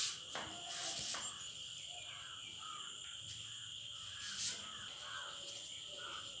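A steady high-pitched insect trill, typical of a cricket, runs in the background. It is broken by a few brief scratchy strokes of a marker on a whiteboard.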